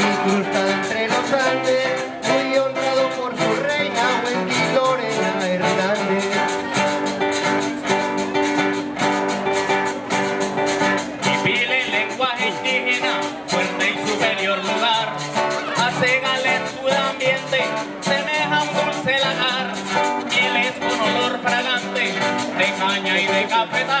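Live Colombian string-band music: two acoustic guitars strumming, a metal tube percussion instrument keeping the rhythm, and a man singing coplas into a microphone, the singing clearer in the second half.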